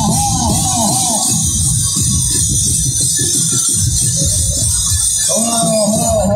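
Loud procession music: dhol drums beating under a steady high shimmer like cymbals. A short melodic figure rises and falls about four times a second, stops about a second and a half in, and comes back near the end.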